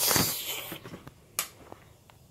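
A child's mouth imitation of a toilet flush: a hissing whoosh that fades out over about a second, followed by a single short click.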